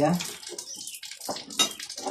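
Knife chopping fresh mostacilla leaves on a ceramic plate: several quick, sharp strikes of the blade on the plate, over a steady hiss like running water.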